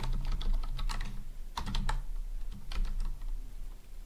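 Typing on a computer keyboard: rapid, irregular keystrokes in short bursts.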